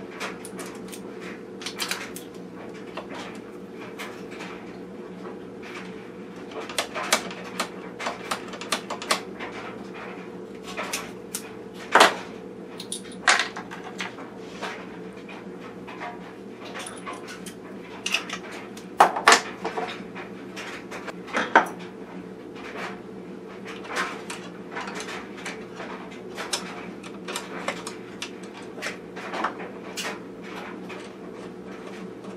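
Small metal sewing-machine parts and hand tools clicking and clinking on a workbench as parts are handled and fitted to the underside of a Singer 127, with a few sharper knocks among them. A steady low hum runs underneath.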